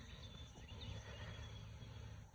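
Faint outdoor ambience: a low, even rumble with a thin, faint high tone held over it.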